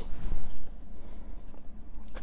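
A sheet of card-weight patterned paper sliding and rustling across the base of a paper trimmer as it is pushed into place, loudest in the first half second and then fainter.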